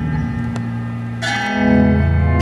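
Live instrumental improvisation in a slow, ambient passage: low held bass notes under ringing bell-like tones, with a new bell-like strike about a second in that rings on.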